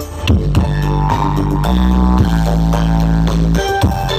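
Loud dance music with deep, held bass notes and drum hits, played through a large truck-mounted sound system speaker stack (ME Audio). One bass note is held for about two seconds in the middle.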